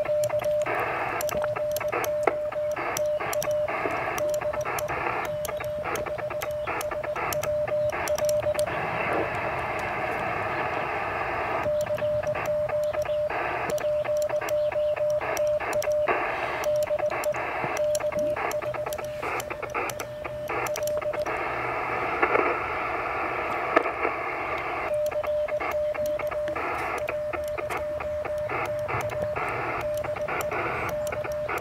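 Morse code CQ call sent on a paddle key, heard as the Mission RGO One transceiver's steady sidetone keyed on and off in three long runs. Short stretches of shortwave band hiss fall between them while the receiver listens for a reply.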